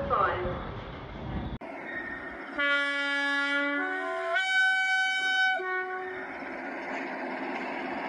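Train horn sounding: a long low note, then a higher note about four seconds in, then a short low note again, over steady rail noise.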